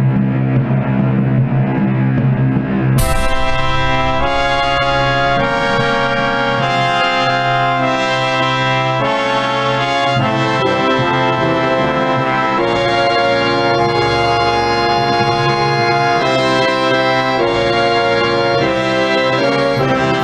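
Digital full-orchestra playback of a concert overture score from Finale notation software, with brass to the fore. A low sustained opening gives way about three seconds in to a sudden loud entry of the full orchestra, which then moves through chords that change about once a second.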